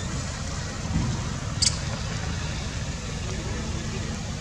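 Steady low rumble with a hiss above it, the background noise of an outdoor recording. One short, sharp high click comes about one and a half seconds in.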